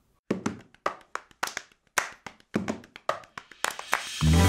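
A fast, uneven run of sharp percussive hits, about four a second, each with a short ringing tail.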